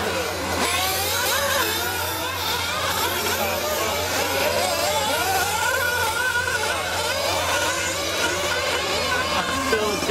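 Several nitro RC buggy engines whining together, their pitches constantly rising and falling as the cars accelerate and brake around the track.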